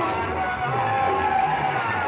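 Loud music played through a large stack of horn loudspeakers: a wavering melody line over a low, pulsing beat.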